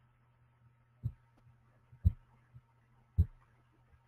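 Three short, dull thumps about a second apart, each with a faint click on top, over a low steady hum.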